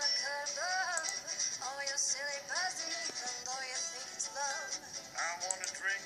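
A song playing: a sung vocal melody over musical backing, heard through a laptop's speakers in a room.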